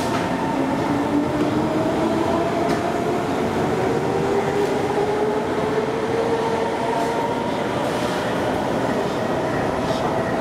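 Singapore North South Line MRT electric train running on an elevated viaduct. The electric traction motors give a whine that climbs steadily in pitch as the train gathers speed, over a running rumble with a few faint clicks.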